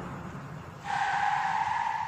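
Felt-tip marker squeaking on a whiteboard as it writes: one steady high squeal that starts about a second in and lasts about a second.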